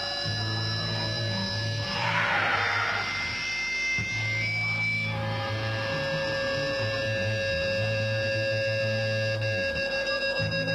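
Live black metal band playing long, held chords over a steady low drone, with a swell of noise about two seconds in.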